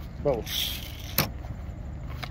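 A clear plastic bag rustling and crinkling in the hands, with one sharp click just past a second in, over a steady low rumble.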